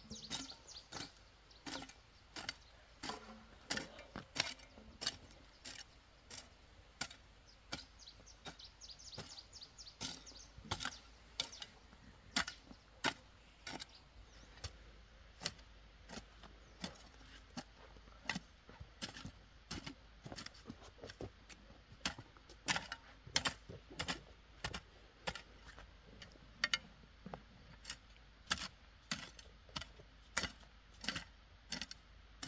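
Metal hand hoe chopping into weedy soil in short, unevenly spaced strokes, about two a second.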